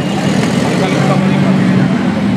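A motor engine running steadily nearby, a low hum over street noise, with faint voices.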